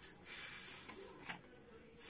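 Breath blown through pursed lips at a paper pinwheel to set it spinning: soft, breathy puffs, the main one lasting about a second, with short pauses between.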